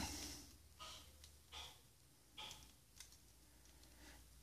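Near silence, broken by four or five faint, short handling sounds about a second apart as the hands of a plastic action figure are swapped.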